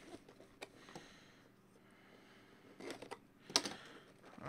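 Light taps and handling noises of a cardboard trading-card box being lifted and turned over in the hands, with a sharper knock about three and a half seconds in.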